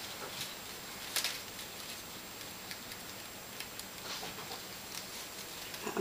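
Light rustling and clicking of thin card slices being slotted and woven together by hand into a paper sliceform, with one sharper tick about a second in.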